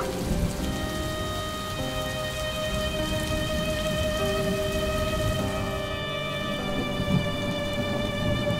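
Rain sound effect: a steady patter of falling rain, with soft sustained music notes held underneath. The rain's hiss thins out about six seconds in.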